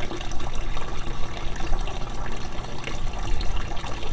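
Steady running and trickling of water as a pump circulates it through a PVC-pipe hydroponic system and it drops back down to the reservoir.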